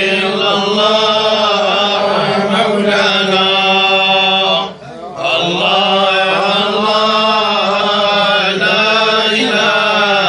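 Men's voices reciting together in unison, the collective Quran chant of Moroccan tolba, held on long, steady notes. There is one short break for breath about five seconds in before the chant resumes.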